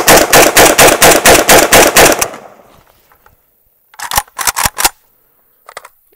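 AK-pattern rifle fired in a rapid string of shots, about five a second for some two seconds, feeding from a dirt-packed KCI steel magazine and cycling without a stoppage. A shorter, quieter run of sharp sounds follows about four seconds in.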